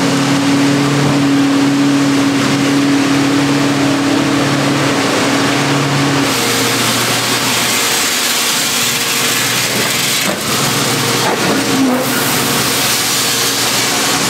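Semi truck engine running with a steady low hum, and shelled corn pouring out of the hopper trailer's gates through the dump pit grate. About six seconds in the hum fades and a steady rushing hiss takes over.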